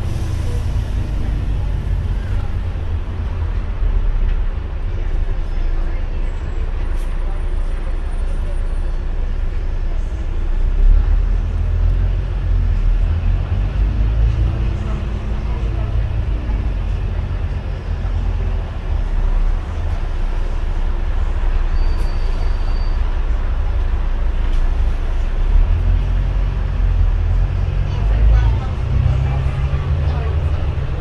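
Interior of a double-decker bus on the move, heard from the upper deck: a continuous low engine and road rumble that swells and eases a little as the bus drives on.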